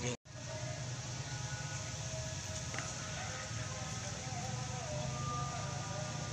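Steady low hum of distant road traffic, with faint wavering tones above it. The sound cuts out completely for a moment just after the start.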